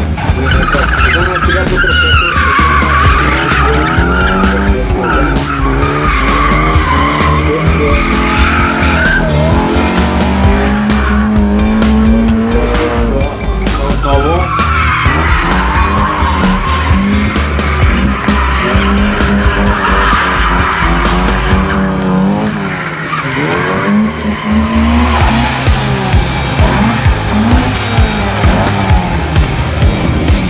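Classic Lada saloon's four-cylinder engine revving up and down hard while its tyres squeal and skid through the turns of a gymkhana course. The engine eases off briefly about two-thirds of the way through before pulling hard again.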